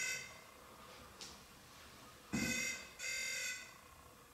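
Handheld ghost-hunting detector with twin antenna rods going off: three short electronic beeps. The first comes right at the start, then two more close together about two and a half and three seconds in.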